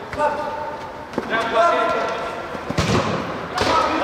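Players' voices calling out during an indoor futsal match, with a few thuds of the ball being kicked, one about a second in and another near three seconds in.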